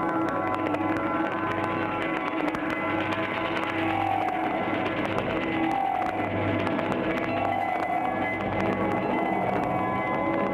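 Layered turntable music made from vinyl records: held drone tones with bell-like notes, a few slowly gliding tones in the middle, and scattered vinyl clicks through it.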